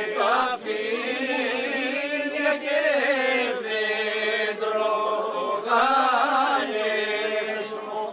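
A group of people singing together unaccompanied, a slow Greek folk song in long, drawn-out phrases with wavering, ornamented pitch and a brief break for breath about half a second in.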